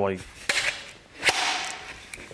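Red-handled tin snips cutting through galvanized sheet-metal S cleats, giving two sharp snaps about a second apart, the second with a short metallic rattle after it.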